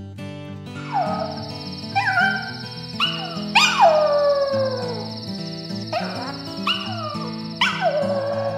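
A dog howling in a string of falling calls over acoustic guitar music, with the longest and loudest howl about three and a half seconds in.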